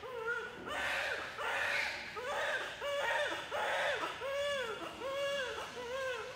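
A newborn baby crying in repeated wails, about one cry a second, each rising and falling in pitch.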